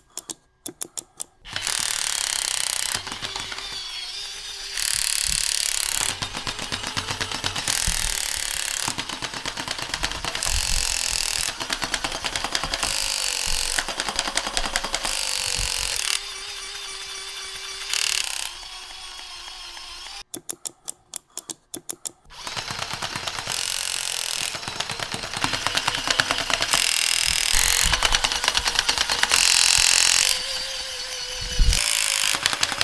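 Motor and plastic gearbox of a crawling-soldier toy overdriven from a bench power supply, clattering rapidly in loud stretches alternating with quieter ones, with a faint whine that climbs as the voltage is raised toward 15 V. It cuts out briefly twice, at the start and about two-thirds of the way through.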